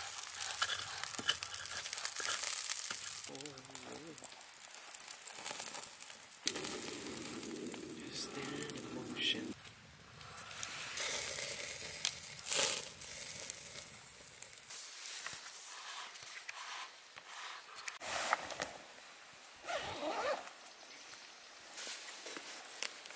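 Wood campfire crackling and popping, with sausages sizzling on the grill over the coals. Indistinct voices come and go several times.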